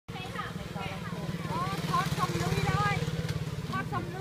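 A small engine idling with a steady, rapid low putter, with people's voices over it.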